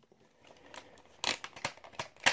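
Handling noise on a wooden tabletop: a quick run of light clicks and knocks in the second half.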